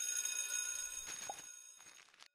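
A high, shimmering bell-like chime sound effect that starts abruptly and fades away over about two seconds, with a short rising blip about a second in.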